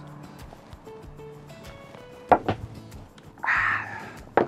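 Soft background music, and about two and a half seconds in a sharp double knock of beer glasses set down on a wooden table.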